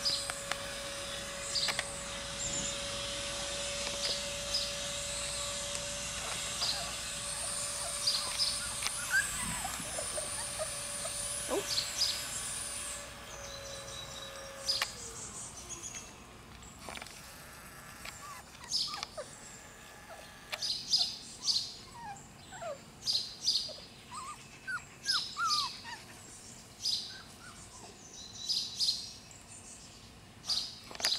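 Small birds chirping in short, repeated high calls, busiest in the second half. A steady hum and a hiss stop about halfway through.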